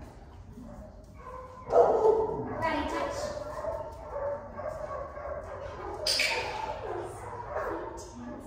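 A dog whining and yipping, starting a little under two seconds in.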